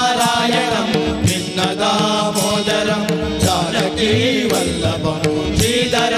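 A devotional bhajan sung live by male voices to harmonium accompaniment, the harmonium holding steady notes under the melody, with percussion strokes keeping a regular beat.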